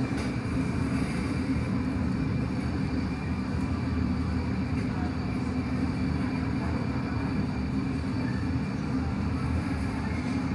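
Steady low roar of a glassblowing studio's gas-fired glory hole and furnaces, even and unchanging.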